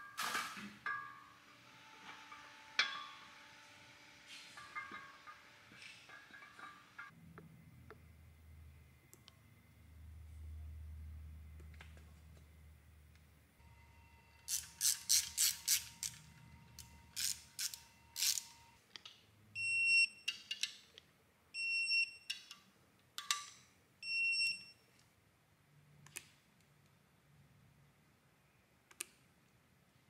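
Hand-tool work on an aluminum LS3 engine block: scattered clicks and knocks of parts being fitted, then a quick run of ratchet clicks about halfway through. Four short electronic beeps follow a few seconds later.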